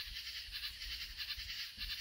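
Faint background nature-sound ambience: a steady, rapidly pulsing high-pitched insect chorus with a low rumble underneath.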